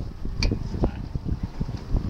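Wind buffeting the microphone on an open boat at sea, a gusty low rumble with a couple of short sharp clicks.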